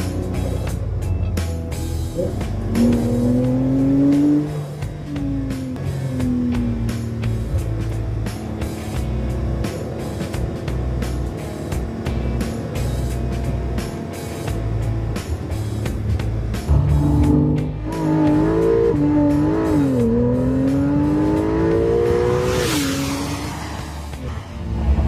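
Porsche 911 GTS six-cylinder boxer engine accelerating hard, its pitch climbing and dropping with gear changes, once a few seconds in and again through the last third, with a short rushing sound near the end. Background music plays throughout.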